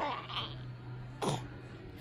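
A baby's voice: two brief vocal sounds about a second apart, each sliding down in pitch, made while she sucks on her fingers.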